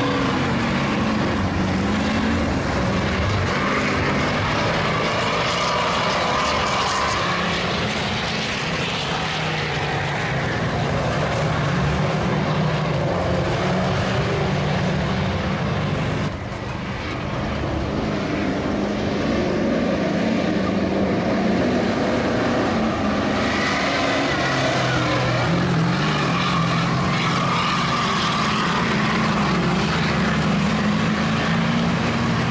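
Engines of autocross racing trucks running and revving, with a brief drop in level just past halfway.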